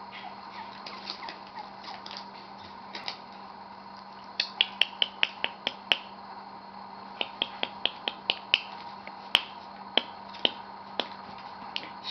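Sharp clicks in two quick runs of about eight each, at roughly four a second, through the middle, then a few single clicks spaced about half a second apart, over a faint steady hum.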